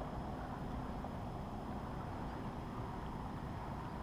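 Steady low rumble of wind buffeting the microphone over open water, with no distinct events.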